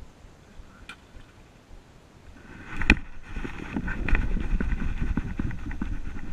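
A baitcasting rod and reel handled right at the microphone: one sharp click about three seconds in, then a continuous rustling and rumbling that runs on.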